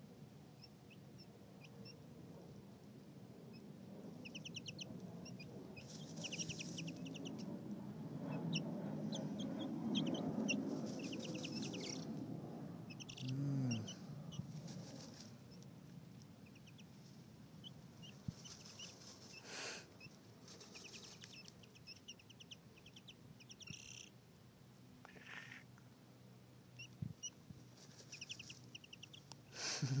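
Young chicks peeping in quick, trilling runs of high notes, scattered throughout, over the scratchy rustle of dirt as they dust-bathe; the rustling swells louder in the first half.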